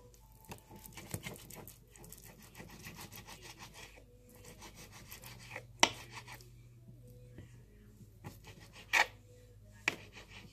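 Kitchen knife slicing raw chicken breast, a run of quick scraping cuts in the first few seconds, with sharp clicks of the blade against the plate beneath; the loudest click comes about six seconds in and two more near the end.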